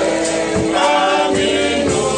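Group of voices singing a gospel song together, sustained and steady.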